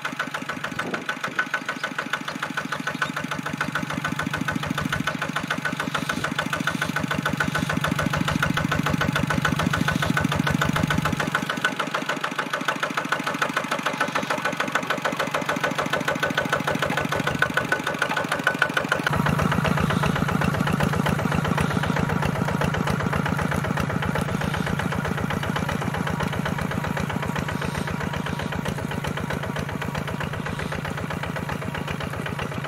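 Single-cylinder diesel engine of a two-wheel walking tractor running steadily under load as it pulls a plough through field soil, a rapid, even chugging. About two-thirds through, the sound turns fuller and deeper.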